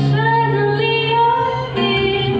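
A woman singing live with two acoustic guitars accompanying her.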